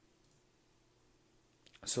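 A faint single computer mouse click about a quarter second in, over a near-silent background with a faint steady hum. A man starts speaking near the end.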